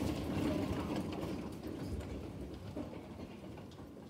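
An audience rising from auditorium seats: a dense shuffling and rustling with scattered small knocks, loudest at the start and fading over a few seconds.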